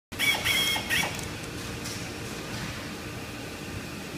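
Three short high-pitched chirps in the first second, the loudest sounds here, then a steady low hum of background machinery.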